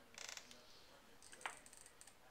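Quiet room with small faint clicks: a quick rattle of ticks near the start, then a single sharper tick about one and a half seconds in, with a few fainter ticks around it.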